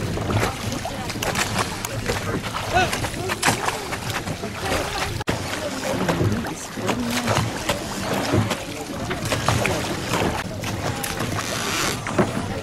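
Outdoor riverside ambience from a boat: indistinct voices mixed with water and boat noise, with scattered sharp knocks throughout. The sound breaks off for an instant about five seconds in.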